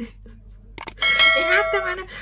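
Subscribe-button overlay sound effect: a single click, then a bright bell-like ding that rings for about a second as the notification bell is hit.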